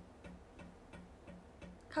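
Room air conditioner making a faint, even ticking like a metronome, about three or four ticks a second. The ticking stops when a window is opened, and fans put it down to the unit's drain pipe, which is typical of air being drawn back through the drain hose: the knocking that a special valve on the pipe is fitted to stop.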